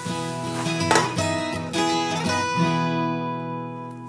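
Short acoustic guitar music interlude: a few plucked and strummed notes, then a last chord that rings out and fades over the second half.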